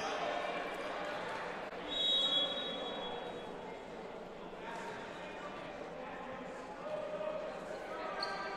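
Gymnasium ambience of crowd chatter and voices echoing in a large hall. About two seconds in comes one referee's whistle blast lasting about a second, signalling the server to serve.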